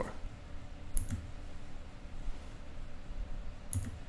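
Two short, sharp clicks at a computer, one about a second in and one near the end, over a faint steady low hum.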